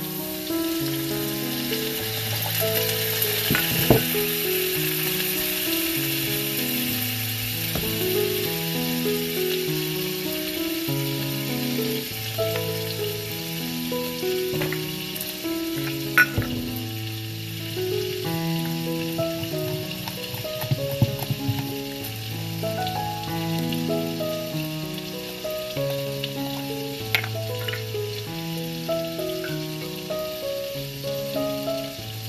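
Butter sizzling and frying in a hot cast-iron skillet as liquid is poured in; the sizzle is strongest in the first few seconds, and a few sharp clicks come through it. A slow piano-like melody plays over it throughout.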